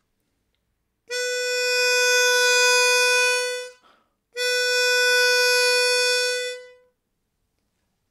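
Chromatic harmonica playing one long held note, then, after a brief pause for breath, the same note held again at the same steady pitch. The playing starts about a second in and stops about a second before the talk resumes.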